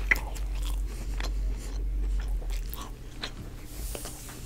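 Close-miked chewing of chicken fajitas and rice: a run of irregular wet mouth clicks and smacks, the sharpest just after the start. A steady low hum runs underneath.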